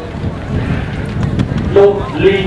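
Low rumbling wind noise on open-air microphones during a pause in a man's speech; his voice resumes near the end.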